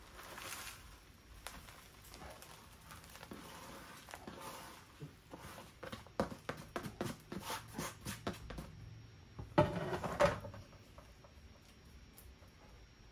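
Gritty bonsai soil mix poured from a plastic tray into a plastic pot: a soft trickle of grains, then a run of small ticks and patters as the soil is scraped out of the tray by hand. A louder scraping clatter comes about ten seconds in.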